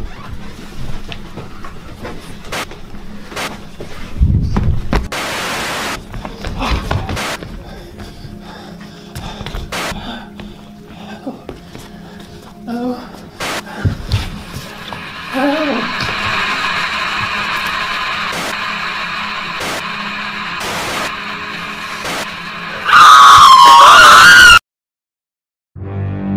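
Horror-film sound design: a cry of "no!" followed by scattered knocks and thuds, with an eerie drone building from about fifteen seconds in. Near the end a very loud, wavering scream that cuts off abruptly into silence.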